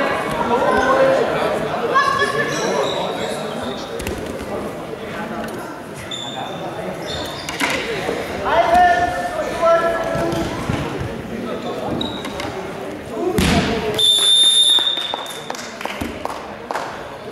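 Voices calling out in a large hall while wrestlers thud on the mat, with short referee whistle blasts. Near the end there is a sharp thud, then a long whistle blast that ends the bout.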